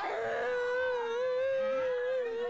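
A voice holding one long, steady howling call on a single pitch, starting suddenly and barely wavering.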